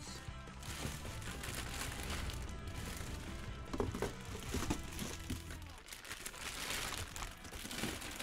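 Clear plastic bags full of plastic capsule toys crinkling and rustling as they are handled and lifted out of a cardboard box, with background music underneath.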